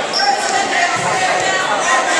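Overlapping, indistinct voices of coaches and spectators calling out in a gym hall, with a dull low thud about a second in from the wrestlers going down on the mat during a takedown.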